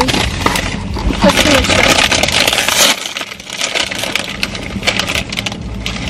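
Close crinkling and crunching noises with many small clicks, loudest in the first half, over a faint steady low hum.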